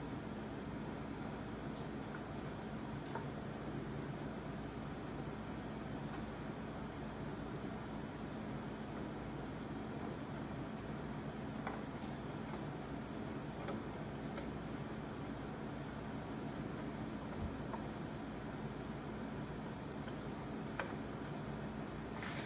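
Steady fan hum, with a few faint light taps and clicks scattered through it as a thin wooden rail is fitted against plywood frames.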